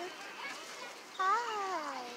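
A high, drawn-out sing-song voice, likely a woman cooing at a baby: one long call that rises a little and then slides down in pitch, starting just after a second in.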